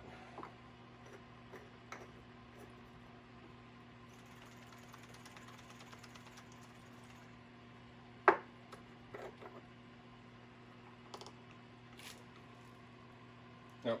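A small paint bottle and its plastic cap being handled: scattered light clicks and taps, with a faint quick ticking for a few seconds in the middle and one sharp, loud click a little past halfway, over a steady low hum.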